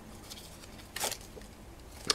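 Faint handling rustle of artificial leaves being pulled off their stem, with one short, crisper rustle about a second in.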